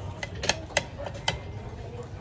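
Eating noises: a few sharp, short clicks spread across two seconds, three of them clear, while oysters are eaten with a metal spoon.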